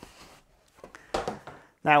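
A waxed cardboard box lid being handled and set down on a counter: a faint rustle of card, then a short sharper scuff a little past a second in.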